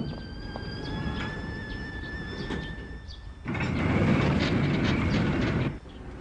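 Cartoon sound effect of a turning Ferris wheel: a steady high metallic squeal with a few faint clicks. About three and a half seconds in, a louder rolling rumble takes over for about two seconds and then cuts off suddenly.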